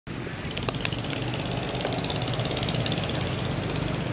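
A steady low mechanical hum, like a running engine, with a few sharp clicks a little under a second in.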